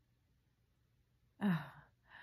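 Near silence for over a second, then a woman's short voiced sigh, an 'uh' that falls in pitch and trails off into breath.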